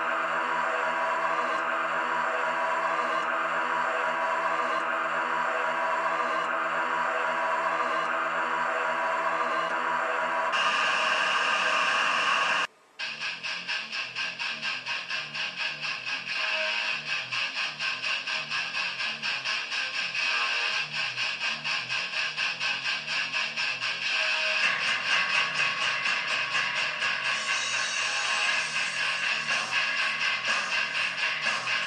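Soundtrack music: a held, droning chord for about the first ten seconds, a brief cut to silence near the middle, then a fast, pulsing piece with strummed electric guitar.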